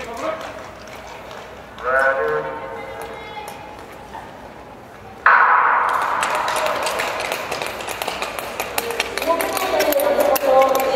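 Speed-skating race start in a large indoor rink hall: a starter's spoken command echoes about two seconds in, then just past five seconds the start signal goes off suddenly and loud voices shouting follow as the skaters set off.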